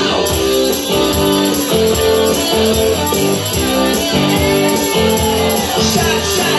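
Rock karaoke backing track playing an instrumental passage led by guitar over a steady beat, with no vocals.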